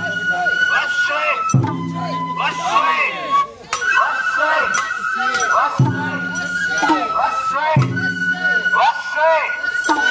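Sawara-bayashi festival music: shinobue bamboo flutes holding long high notes over sharp drum strokes, with voices mixed in.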